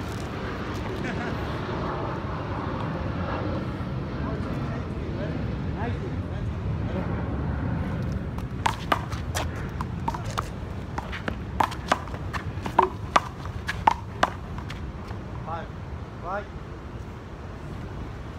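Steady low city background hum, then, about eight seconds in, a run of a dozen or so sharp, irregularly spaced smacks of a rubber handball off hands, the concrete wall and the pavement, lasting about six seconds.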